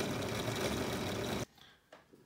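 Benchtop drill press running steadily as its bit drills through a plexiglass disc; the sound stops abruptly about one and a half seconds in.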